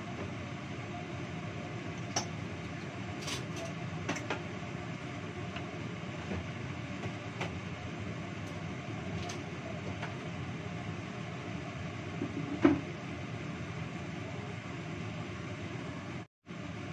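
Soup boiling in a covered stainless wok on a gas stove: a steady low rumble, with a few faint clicks and one sharper tap near the end.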